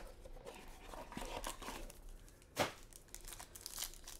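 Foil trading-card pack wrapper being handled and torn open by hand, a light crinkling rustle with one sharp, louder crackle about two and a half seconds in.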